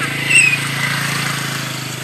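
A small engine runs steadily nearby with an even hum. About a third of a second in there is one short, high, whistle-like call.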